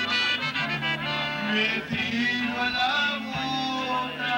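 A live band playing an upbeat song, with a bass line stepping from note to note about once a second under guitars and a bending melody line of voice or saxophone.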